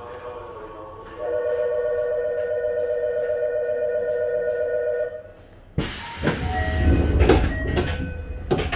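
A steady electronic departure warning tone with a slight warble sounds for about four seconds. Then, about six seconds in, the passenger doors of a Tokyo Metro 7000 series train slide shut with a sudden loud thump and a rush of air, followed by a few knocks.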